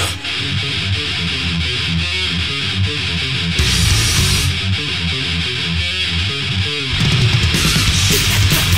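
Thrash metal recording in an instrumental stretch between sung lines: electric guitar riffing over bass and drums, with a cymbal-like crash around the middle and the band filling out again near the end.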